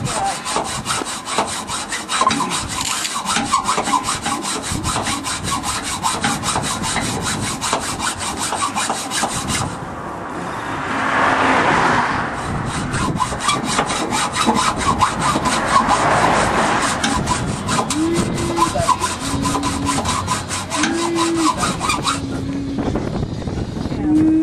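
Hacksaw sawing through the metal chest rail of a horse float in fast, continuous strokes, with a brief let-up about ten seconds in. A few short low steady tones sound near the end.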